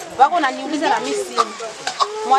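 A woman talking, with two short sharp clicks in the second half.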